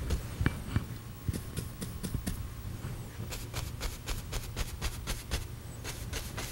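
A stiff bristle brush dabbing oil paint onto a canvas in short, soft taps. The taps are scattered at first and come faster and more evenly in the second half, over a steady low hum.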